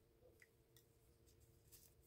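Near silence: room tone with a faint steady hum and a couple of very faint ticks.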